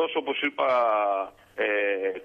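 Only speech: a man talking over a telephone line, drawing out two long vowels.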